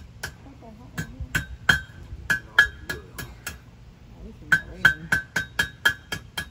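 Blacksmith's hand hammer striking hot iron on the horn of a steel anvil while scrolling the curled ends of a forged S-hook. The strikes ring sharply, about three a second, in a run of about ten, then pause for about a second before another quick run of six.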